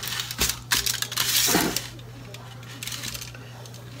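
Aluminium foil crinkling and rustling with light clinks as a charred, roasted eggplant is handled and peeled on a foil-lined tray, busiest in the first two seconds and quieter after. A steady low hum runs underneath.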